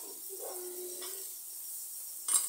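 Faint steady sizzle of beaten eggs with chopped tomato and green chilli frying in a pan, with a faint brief tone in the first second.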